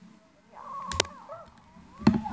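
Two sharp plastic clicks in quick succession about a second in, as a small plastic toy is handled, over a child's high-pitched wavering vocal sound.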